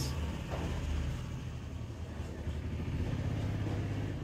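Low, steady engine rumble over a faint hiss.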